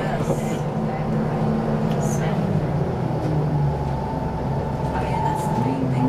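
Detroit Diesel 6V92 two-stroke V6 diesel engine of a 1991 Orion I bus droning steadily as the bus drives, heard from inside the passenger cabin. A higher whine comes in for a couple of seconds past the middle, and near the end the engine note rises.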